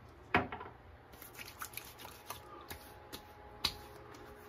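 Aftershave splash bottle being handled and opened, with hands working the splash: a sharp click about a third of a second in, then faint rustling and small clicks, and another click near the end.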